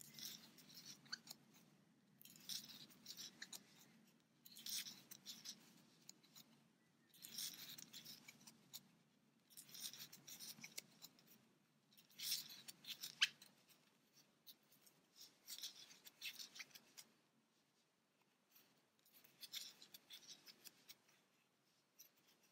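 Faint scratchy rustling of a crochet hook pulling yarn through stitches, in short bursts every two to three seconds as each single crochet stitch is worked.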